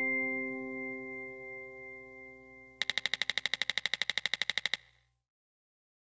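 Electronic chime ringing out in several steady tones and slowly fading, followed about three seconds in by a rapid electronic pulsing, about eleven pulses a second for two seconds, that cuts off suddenly.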